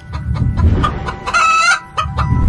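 Chicken calls over a low rumble, with one loud, short, pitched call about a second and a half in.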